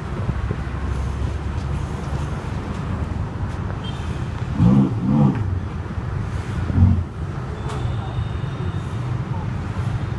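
Ferrari 488 GTB's twin-turbo V8 running at low revs as the car creeps forward, a steady low rumble. Two short louder swells come about halfway through and another a couple of seconds later.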